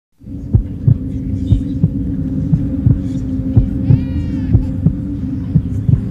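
Dramatic background track: a steady low drone under a deep, even thump about three times a second, with a brief higher gliding tone about four seconds in.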